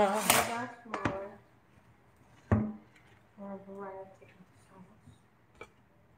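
A man singing 'la-da' and humming a short tune to himself, with a few sharp clicks as fried fritters are set down on a plate.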